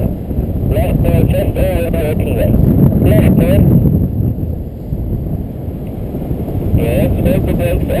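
Wind rushing over the microphone of a paraglider in flight, loud and steady. Over it, an instructor's voice comes through the pilot's radio for the first few seconds and again near the end.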